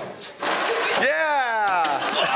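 A skateboard stunt going wrong: a clattering rush of noise, then a long shout that slides down in pitch as the skater falls onto the track.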